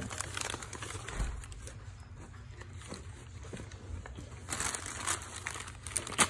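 Wrapping paper crinkling and rustling as a dog chews and paws at it, with louder crinkles about four and a half to five seconds in.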